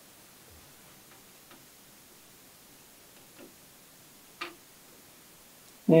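A few faint clicks and one sharper click about four and a half seconds in, as a 5.25-inch bay fan controller is pushed and seated into a PC case's metal drive bay.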